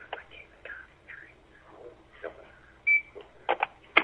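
Faint, indistinct talk heard over a telephone line, with a short high beep about three seconds in and a few sharp clicks near the end.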